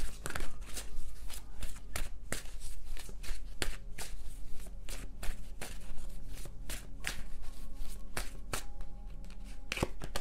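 Tarot deck shuffled by hand: a quick, irregular run of card riffles and snaps, several a second.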